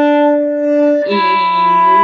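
Violin bowing two long notes: the open D string, then, about a second in, E with one finger down on the D string. A brief dip in loudness marks the change of bow between them.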